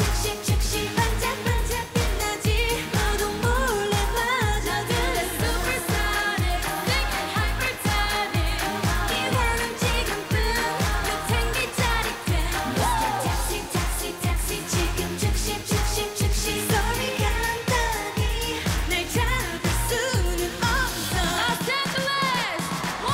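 A K-pop girl group singing a pop song live over a backing track with a steady dance beat. The beat drops out just before the end.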